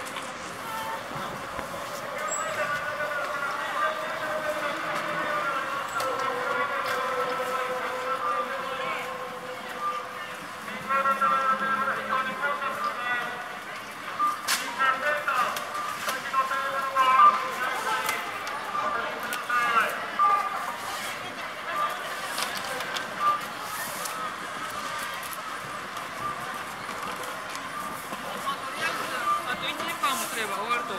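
Crowd of spectators talking at once in a busy street, many overlapping voices with no single clear speaker, busiest in the middle of the stretch.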